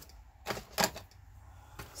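Paper handling: a book and small paper pieces rustling and tapping against a cutting mat, two short strokes just under a second in and a softer one near the end.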